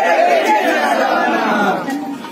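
A crowd chanting a political slogan back together, many voices shouting as one blurred mass, dying away near the end.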